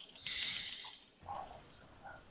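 A short breath close to the microphone, heard as a hiss lasting under a second near the start, with a faint brief sound about a second later.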